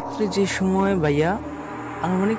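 A man talking in Bengali, with a steady low hum beneath.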